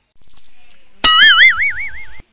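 A cartoon 'boing' comedy sound effect comes in about a second in: a loud, pitched, wobbling tone whose pitch swings up and down about four times a second. A low rumble comes just before it.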